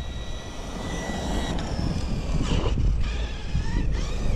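Brushless motor and two-speed drivetrain of an RC4WD Miller Motorsports Rock Racer RC truck running flat out in second gear: a thin high whine that rises and falls, over a low rumble.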